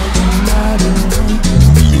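Loud cumbia dance music with a steady, heavy bass line.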